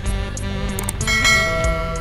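Background music with a steady beat, and a bright bell chime about a second in: the notification-bell ding of a subscribe-button animation.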